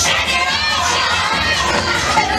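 A group of children's voices shouting and cheering together over dance music, loudest in the first second and a half.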